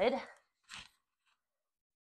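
The tail of a woman's spoken phrase, then one short soft knock about three-quarters of a second in, then silence.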